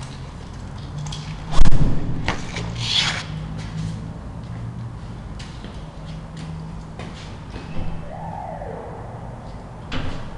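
A heavy thump about a second and a half in, followed by scraping and scattered knocks over a low steady hum.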